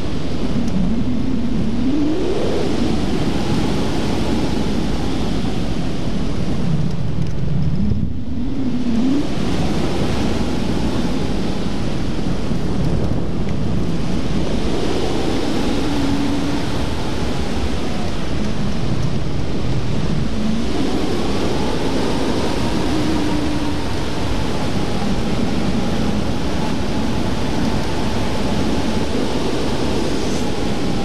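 Wind rushing over the microphone of a camera fixed to a tandem hang glider's wing frame in flight: a loud, steady roar, with faint tones that slowly rise and fall in pitch.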